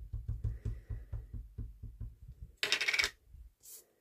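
Small ink pad dabbed rapidly against a clear stamp on an acrylic block: a run of soft taps, about six a second, stopping after about three and a half seconds. A louder brief scuffing sound comes about three seconds in, as the block is handled.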